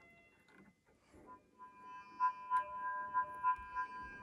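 Buchla 200 modular synthesizer tone fading in about a second in. It is a 259 complex oscillator heard through the odds-and-evens outputs of a 296 spectral processor: a steady pitched tone with several overtones, pulsing about three times a second.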